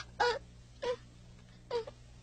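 A girl sobbing: three short catches of breath, evenly spaced, each a brief whimper.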